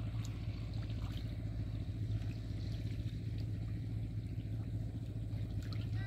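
A small engine running steadily with a low, even drone, with faint wet clicks and trickles of water over it.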